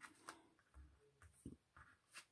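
Near silence, with a few faint soft taps and slides of hands touching tarot cards laid out on a cloth-covered table.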